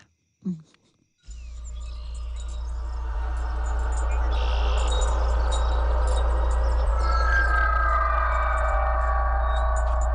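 Horror film score: a low sustained drone comes in about a second in and swells, with shimmering, chime-like tones and high twittering above it, and higher held notes joining near the end.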